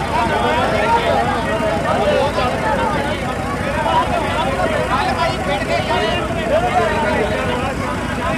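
Many men talking at once in a crowded huddle, their voices overlapping into an unclear babble, over a steady low rumble.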